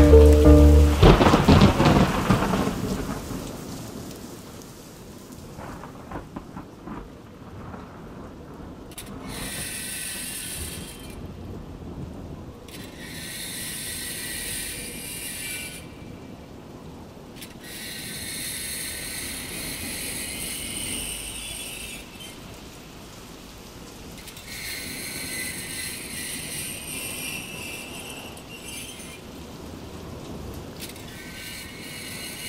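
The song's music dies away within the first two seconds, leaving a quieter outro of rain-like noise that swells and recedes every few seconds.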